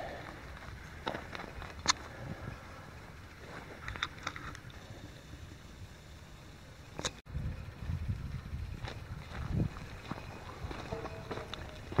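Footsteps on a dirt walking track with a few sharp clicks and knocks from the handheld camera, and a low rumble of handling noise from about seven seconds in.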